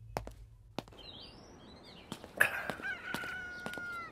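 A rooster crowing once, one long call beginning a little past halfway, with small birds chirping briefly just before it and a few sharp clicks in the first second.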